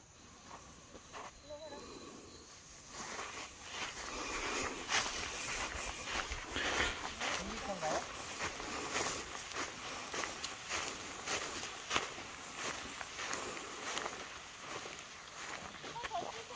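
Frogs calling in a dense, irregular chorus that grows louder about three seconds in, with footsteps on grass.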